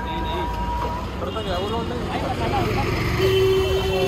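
Busy street ambience: several people's voices around a food stall over a steady rumble of passing traffic, with a steady tone held for about a second near the end.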